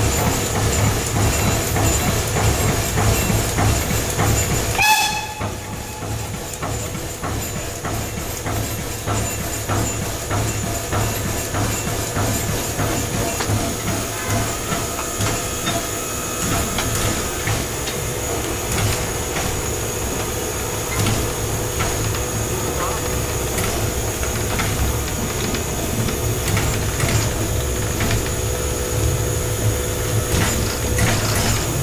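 Steam-driven air pump of a class 52 steam locomotive, heard on the footplate, pumping with a steady rhythmic beat and steam hiss to rebuild brake air pressure after an emergency brake application. About five seconds in there is a brief tone and an abrupt drop in level, after which a quieter rhythmic beat and hiss carry on.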